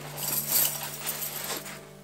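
Steel chains and spikes of a pair of Kahtoola microspikes jingling and clinking against each other as they are pulled out of their fabric stuff sack, the rattle dying down near the end.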